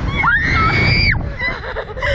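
A person screaming: one high-pitched yell that rises, holds for about a second and breaks off, over a low rumbling noise.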